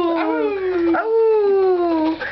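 Dog howling: two long, drawn-out "aroo" howls, each sliding slowly down in pitch, the second starting about a second in.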